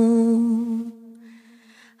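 A woman's voice holding one long, level sung note that fades out about halfway through, leaving only a faint steady tone.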